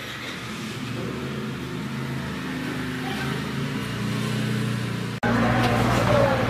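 A motor vehicle engine running, slowly getting louder. About five seconds in, the sound cuts abruptly to louder, noisier background.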